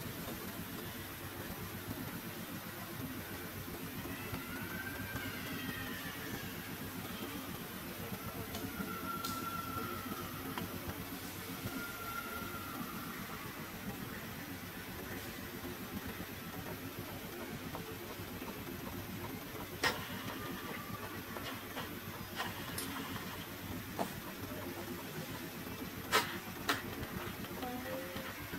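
A steady low engine hum throughout. A few faint high calls glide up and down in pitch between about four and thirteen seconds in, and a few sharp clicks come in the last six seconds.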